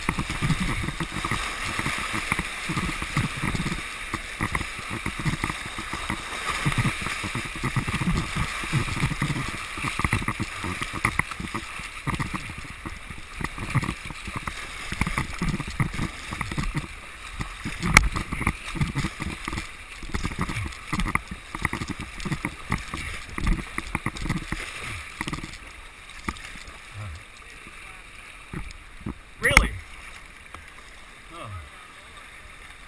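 River water rushing through shallow riffles around a kayak, with kayak paddle strokes and irregular low buffeting on the camera microphone. A sharp knock comes about midway and another near the end, and the water grows quieter over the last few seconds.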